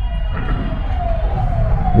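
A siren's single wailing tone, sliding slowly in pitch in two long sweeps of about a second each, over a low steady rumble.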